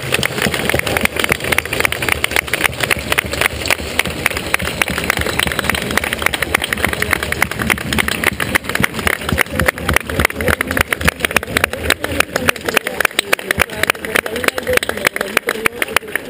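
A crowd applauding: a long, steady round of dense clapping.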